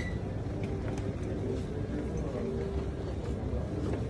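Steady low rumble of a busy indoor hall's background noise, with a faint murmur of voices.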